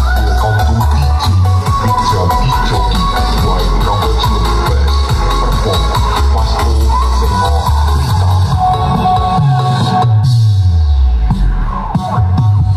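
Electronic dance music played loud through a large outdoor sound-system stack of speaker cabinets, including twin 18-inch bass boxes, heavy in bass. Near the end a deep bass note slides down in pitch.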